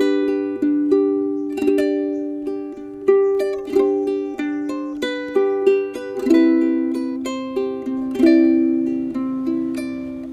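Solid acacia pineapple-body concert ukulele played by hand: chords struck every second or so and left to ring out, shifting to a lower-voiced chord about six seconds in.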